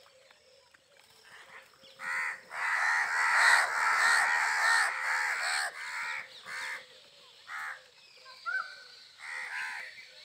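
A flock of house crows cawing. After a quiet start, several birds caw over one another from about two seconds in for a few seconds, then single caws follow every second or two.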